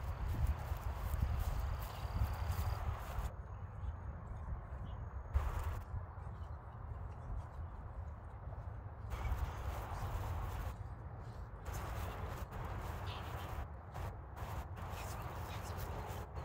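Footsteps of a person walking across a grass lawn, irregular steps over a steady low rumble on the microphone.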